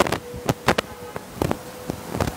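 Clothes hanger and garment being handled: a string of irregular light clicks and knocks as the hanger is picked up, with a faint steady hum underneath.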